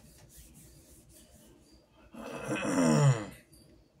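Faint rubbing of hands pressed together. About two seconds in, a man makes a loud, drawn-out wordless vocal sound about a second long that falls in pitch toward its end.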